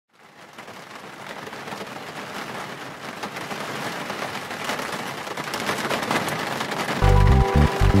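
Rain falling, fading in from silence and slowly growing louder; about seven seconds in, music with a deep pulsing bass comes in over it.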